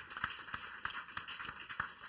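Applause: many hands clapping, the claps irregular and each one heard distinctly.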